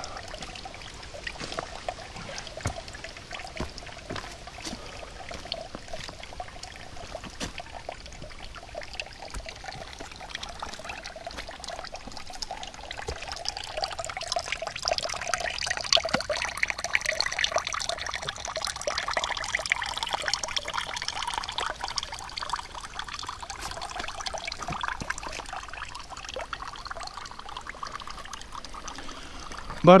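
A thin stream of spring water pouring from a metal pipe spout into a small stone basin, with a steady trickling splash. It grows louder and brighter for several seconds in the middle.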